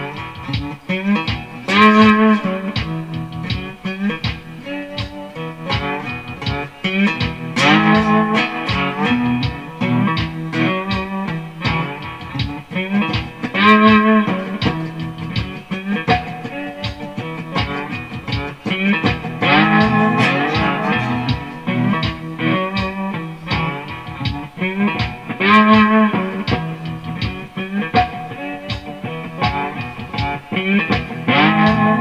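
Fretless cigar box guitar with a single-coil pickup, played with a slide, picking an instrumental blues riff that comes round again about every six seconds.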